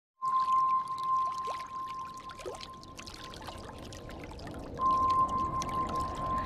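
Sound effect of an animated YouTube logo intro: a steady high tone, loud at the start and again near the end and faint in between, over a noisy bed of scattered clicks with two short falling glides.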